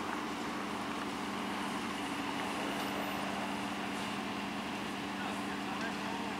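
A steady low mechanical hum with a constant drone in two low tones, unchanging throughout.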